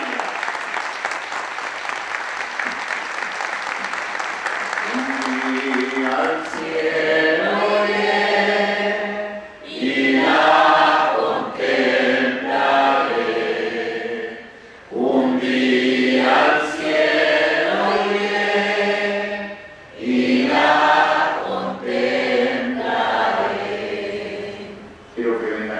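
Clapping for about the first five seconds, then a group of voices singing a hymn in phrases of a few seconds each, with short breaks between them.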